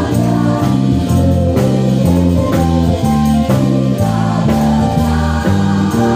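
Live gospel worship band playing, with an electric bass carrying prominent, changing low notes over a drum kit and group singing.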